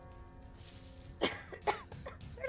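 A person coughing twice, two short sharp coughs over faint steady background music.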